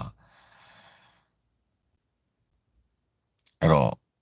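A man's faint breath out just after he stops talking, then silence for over two seconds, then a short, loud burst of his voice near the end, like a sigh or a sound before speaking.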